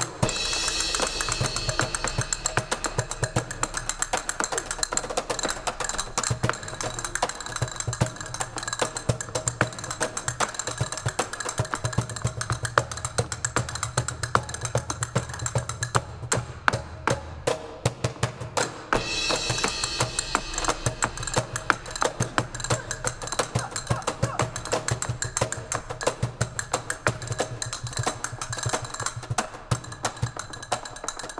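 Castanets clicking in fast rolls and rhythmic patterns over steady djembe hand-drum beats, in a live flamenco percussion duet. A bright ringing sound, like a cymbal, comes in at the start and again about twenty seconds in.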